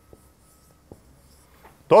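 Faint taps and strokes of a marker writing on a whiteboard, a few short clicks in a quiet room. A man's voice starts speaking right at the end.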